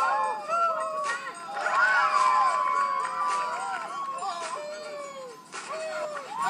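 Soundtrack of a streetball movie playing from a TV, recorded through a phone: several voices shouting over one another, their pitch rising and falling, mixed with music.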